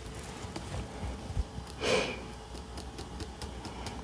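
Faint handling of tarot cards on a cloth-covered table: a few light ticks and rustles, with one short breath-like sound about halfway through.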